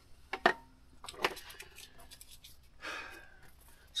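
A few sharp clicks and knocks from hands working a coffee maker to brew a cup: two about half a second in, another just over a second in, then a short soft rustle near three seconds.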